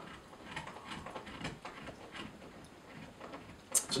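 Faint sips and swallows as a man drinks beer from a pint glass, with a short hiss near the end.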